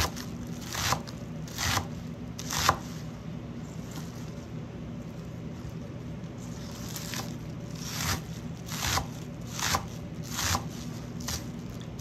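Knife chopping green onion tops on a wooden cutting board, one crisp cut at a time about every second: four cuts, a pause of a few seconds, then a steady run of about seven more. A low steady hum runs underneath.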